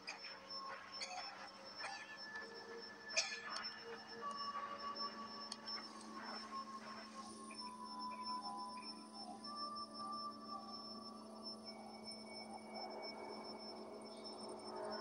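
Faint eerie film score of steady held drone tones, with more tones joining about four seconds in. A few sharp clicks come in the first few seconds, the loudest about three seconds in.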